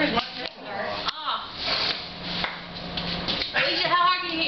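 People's voices, with no clear words, and a brief sharp click about a second in.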